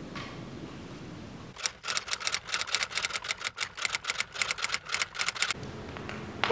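A fast run of sharp, crisp clicks, about six a second, starting about a second and a half in and lasting about four seconds.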